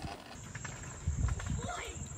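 Footsteps on a concrete sidewalk, with a child's voice calling out briefly near the end and a steady high-pitched whine from about half a second in.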